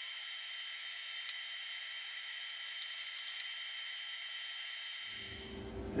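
Steady faint hiss carrying a few constant high whining tones, with the low end cut away, and a few faint ticks.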